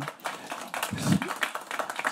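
Scattered light clapping from a seated audience: a run of irregular sharp claps, with a brief voice sound about a second in.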